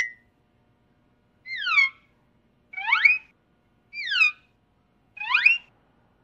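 A brief chirp at the very start, then a series of four whistled calls about a second apart, each a single pitch glide, alternately falling and rising, like a signalling bird call.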